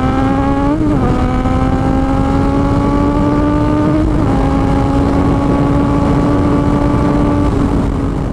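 Sport motorcycle engine pulling on the open road, with wind rushing over the microphone. Its note climbs slowly, dips briefly about a second in and again about four seconds in, then holds nearly steady.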